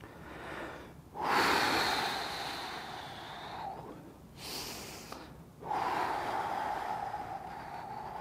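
A man breathing deeply and slowly in and out, a few long audible breaths, the loudest about a second in. The breaths are paced with the movements of a slow stretching exercise.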